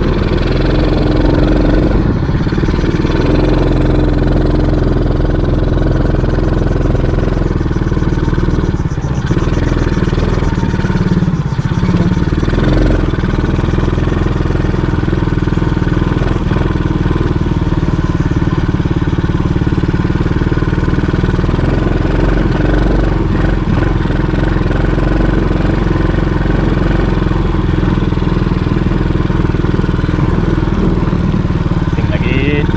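Small ATV (quad bike) engine running while being ridden, heard from the rider's seat. The engine note dips and picks up again around nine and twelve seconds in.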